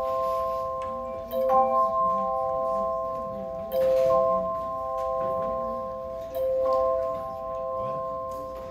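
Hand-held bells rung together as a chord of about four notes, struck afresh three times, roughly every two to three seconds, each chord ringing on until the next.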